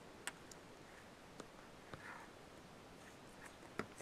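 Near silence: quiet room tone with a few faint, sharp clicks scattered through it, the clearest near the end.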